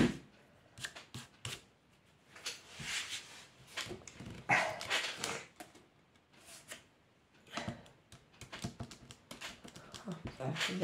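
A dog barking, with the two loudest bursts about three and five seconds in, over small clicks and rustles of a cardboard base and paper tube being handled.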